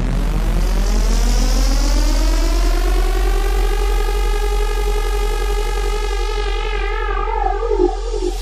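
Hardstyle electronic music with no beat: a synthesizer tone glides up in pitch, then holds and begins to wobble in pitch near the end, over a steady deep bass drone.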